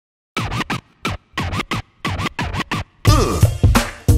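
Hip hop track opening with DJ turntable scratching: a run of short strokes, each bending up and down in pitch, starting about a third of a second in. About three seconds in, a kick drum and bass come in under a falling pitch glide as the beat starts.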